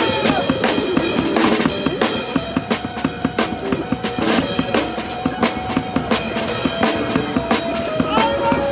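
Live street drumming on a snare drum and cymbals with an electric guitar, played as a rock song: a steady run of quick drum strikes, with a long note held through the middle.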